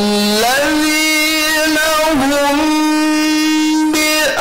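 A man reciting the Qur'an in the melodic tilawah style, holding long drawn-out notes. The pitch steps up about half a second in, dips briefly around the middle, then holds steady.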